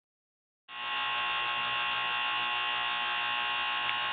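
A steady, even buzzing hum made of several steady tones, starting suddenly about two-thirds of a second in and holding unchanged.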